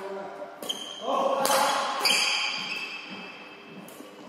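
Doubles badminton rally on a wooden hall floor: several sharp racket hits on the shuttlecock, with sneakers squeaking on the floor.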